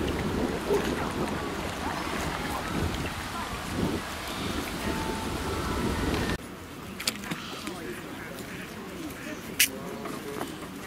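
Indistinct voices of people close by, mixed with wind buffeting the microphone. About six seconds in, the sound cuts abruptly to a quieter outdoor background with a few sharp clicks, one loud one near the end.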